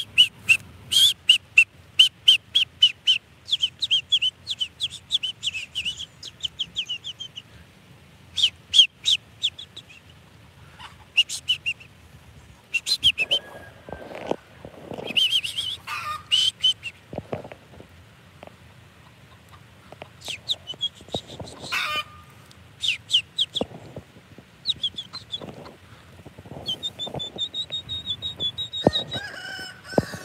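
Birds calling in a yard: runs of quick, high chirps, about four a second, with a hen clucking now and then.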